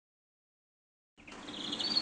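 Silence for about the first second, then caged birds chirping faintly, with a thin high twittering call near the end.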